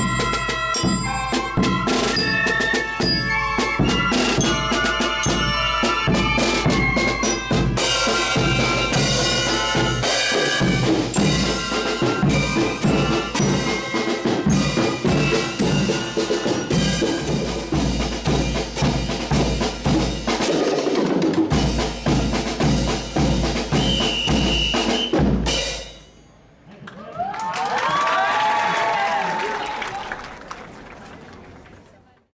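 Drum-and-fife marching band playing a march: snare drums, bass drum and crashing cymbals under a melody on glockenspiel and fifes. The music stops abruptly about four seconds before the end, and crowd voices rise after it.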